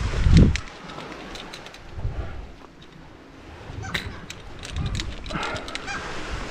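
Climbing gear being handled: a brief low thump at the start, then scattered light metallic clicks of carabiners and rope. Seabird calls, black-legged kittiwakes, sound faintly behind.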